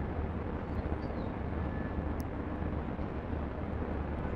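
Steady low rumble and hiss of background ambience, with a faint click about two seconds in.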